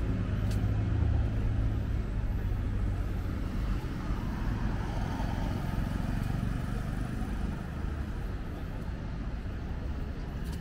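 Street traffic: a car drives past close by at the start with a low engine hum, which fades into steady road noise from passing vehicles.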